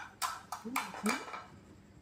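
Brief voices at a shared meal, with a few sharp clicks of chopsticks against bowls and plates in the first second.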